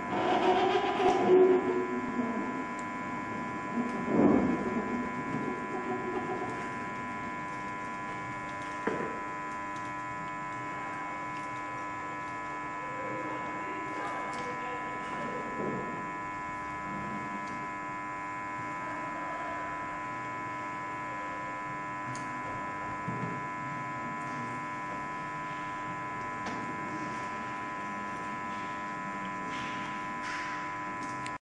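Steady electrical hum with several held tones throughout. Over it, the metal scissor linkage and chain of a hand-cranked glass wiper clank and rattle as it is worked, loudest in the first five seconds, with a sharp knock about nine seconds in and fainter rattles later.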